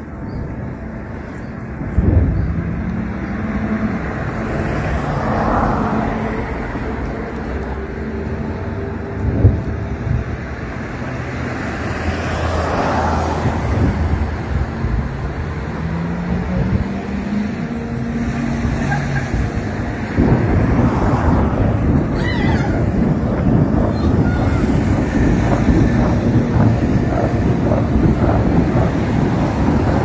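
Distant artillery shelling: a dull blast about two seconds in and another near ten seconds, over wind buffeting the microphone and a steady outdoor rumble.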